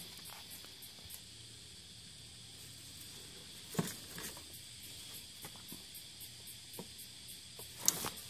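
Faint steady hiss with a few soft clicks and rustles as a hand moves among the engine-bay wiring, the clearest click about four seconds in.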